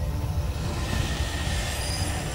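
Dramatic theme music over a dense low rumble, with a metallic, screeching swell coming in about a second in.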